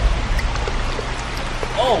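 Water from a small fountain pump starting to pour out of a bamboo spout and splash into a patio pond bowl, over a steady low hum.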